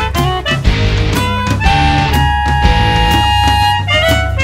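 Jazz-rock fusion band music: drums and bass under a melody line that settles into a long held note in the second half.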